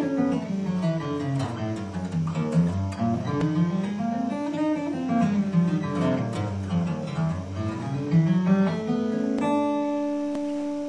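Acoustic guitar in DADGAD tuning played fingerstyle: flowing runs of notes that climb and fall in waves, played harp-style across several strings so the notes ring into one another. Near the end the playing stops on one note left ringing.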